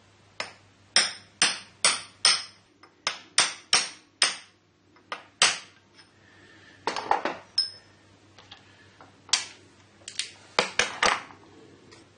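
Hammer tapping a steel roll pin into a shaft in a Harrison M300 lathe apron: sharp metallic blows with a short ring, in groups of two to five quick strikes with pauses between.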